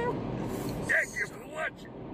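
Steady road noise inside a moving car, with a held sung note ending just as it begins and then three short vocal sounds, the loudest about a second in, the others near the middle and near the end.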